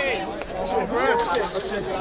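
Men's voices from a crowd of spectators, talking and calling out over one another.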